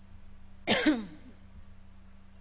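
A woman clearing her throat once, briefly, just under a second in, over a steady low hum.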